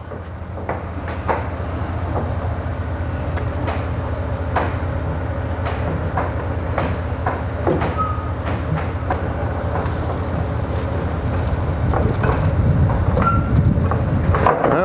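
Steady low hum of an idling diesel engine, with scattered short metallic clicks and knocks from a crank handle turning the curtain tension lock of a conestoga trailer to release it.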